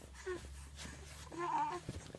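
Two-month-old baby cooing: a brief coo near the start and a longer, wavering coo about a second and a half in.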